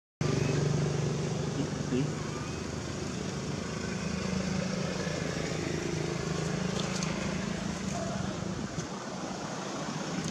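A steady, low engine drone, like a motor vehicle running nearby, that fades out shortly before the end.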